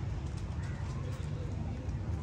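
A steady low rumble with a few faint, short bird calls over it.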